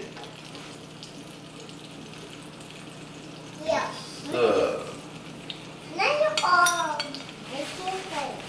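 Beaten eggs sizzling as they fry in a preheated pan on a gas stove, a steady hiss that runs under short bursts of talk in the second half.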